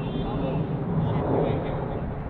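Distant shouts of footballers calling to each other during play, over a steady low rumble that swells slightly about a second in.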